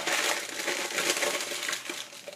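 A sheet of paper being crumpled up by hand: a continuous dense crackling that stops just before the end.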